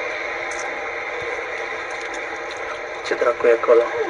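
The soundtrack of a handheld amateur video being played back: a steady, even hiss of outdoor background noise that starts abruptly, with a voice coming in about three seconds in.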